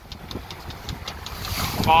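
Wind buffeting the microphone as a low, uneven rumble aboard a small sailing boat under way in a freshening breeze.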